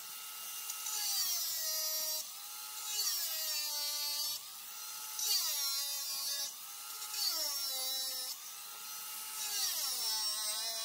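Handheld angle grinder cutting a circle out of strong plastic from a pipe. Its motor whine drops in pitch each time the disc bites into the plastic, with a rasping hiss, then recovers, in about four short cutting passes.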